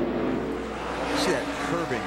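NASCAR Cup Ford Taurus stock car's pushrod V8 running steadily at low revs, around 5,000 rpm, in the corner. A man starts talking over it about a second in.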